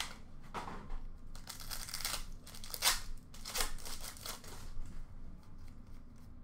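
Foil wrapper of an Upper Deck hockey card pack being torn open and crinkled by hand, in a string of short rustles.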